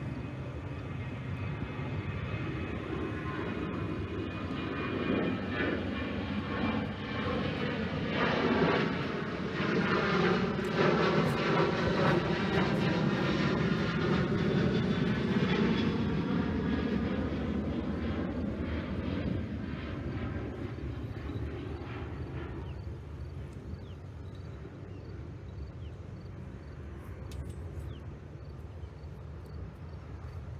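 An airliner flying past near the airport: its engine noise builds, is loudest from about eight to sixteen seconds in with its tone sweeping as it passes, then fades away.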